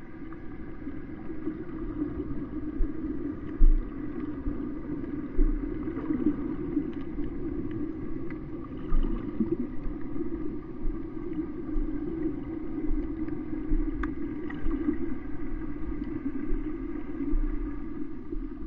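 Underwater sound picked up by a snorkeller's camera beneath the surface: a steady, muffled drone with irregular low thumps and a few faint clicks.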